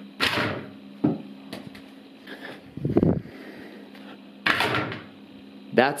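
A mini basketball hits the wooden wardrobe doors and the backboard of a mini hoop with short thuds. There is one just after the start and a second about four and a half seconds in, with lighter knocks between.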